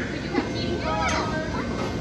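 A young child's high voice, with two short exclamations about half a second and a second in, over steady background room noise.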